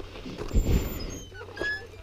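A dog giving a few short, thin, high whimpers in the second half, over a low thump about half a second in.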